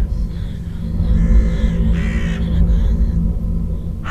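A bird cawing twice, two short harsh calls about a second apart, over a low steady drone of ominous music.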